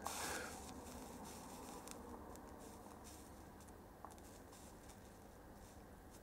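Near silence: faint room tone, with one faint tick about four seconds in.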